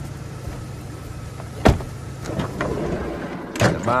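Motor vehicle running, a steady low drone, with a single sharp knock a little under halfway through. A short call from a man's voice comes right at the end.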